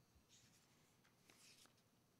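Near silence, with faint brief paper rustles twice as Bible pages are turned.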